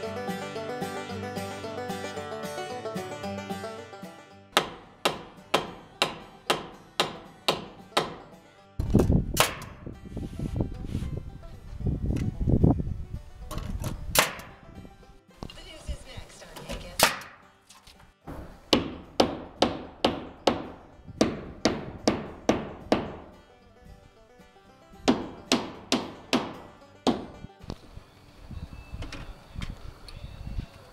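Banjo music for the first few seconds, then nails being driven into plywood sheathing: runs of sharp strikes about two a second, with pauses between runs and a low rumble in the middle.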